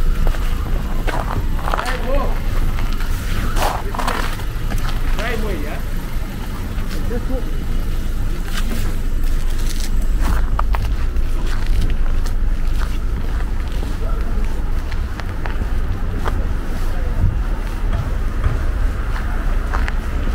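City street sound: a steady low rumble of traffic, with indistinct voices talking during the first several seconds and light footsteps on the sidewalk.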